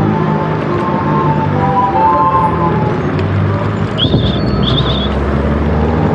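City street traffic noise heard while riding, with music playing along with it. Several short high chirps come about four to five seconds in.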